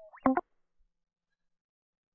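Prominy SC sampled electric guitar: the last of a clean sustained note dies away, and a fraction of a second later comes the library's fret-noise release sample, a hand rubbing across the strings as a short rising squeak. The rub comes in abruptly, like a sudden scrape, right after the note.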